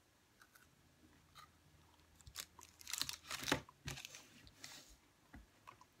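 Close-up chewing of a Kit Kat wafer bar, the wafer crunching between the teeth. The first crunches are faint, and they get louder from about two seconds in until near the end.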